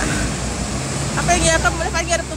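Steady low rumble of a bus engine running at the kerb amid street traffic, with people's voices starting over it about a second in.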